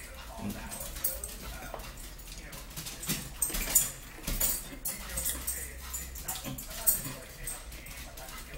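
Metal forks clinking and scraping on plates during a meal, in irregular sharp clicks.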